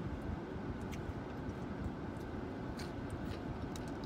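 Steady low rumble of a car's interior, with several faint light clicks scattered through it.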